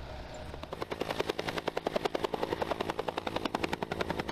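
Helicopter rotor blades chopping with a rapid, even beat while the helicopter lifts a slung load. The beat fades in under a second in and then holds steady.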